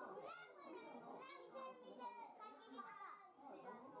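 Faint, indistinct voices of children talking.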